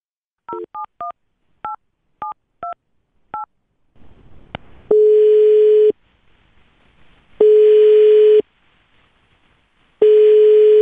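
A telephone number keyed in on a touch-tone keypad: seven quick two-tone beeps. The line then connects and the ringback tone sounds twice, each about a second long, while the call rings at the other end.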